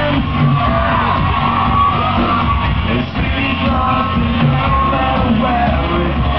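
Rock band playing live, loud and continuous, with the vocalist singing and shouting over drums and bass, heard from within the audience in a club hall.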